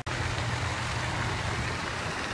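Steady splashing of a fountain's water jet with a low rumble underneath, starting abruptly right at the start.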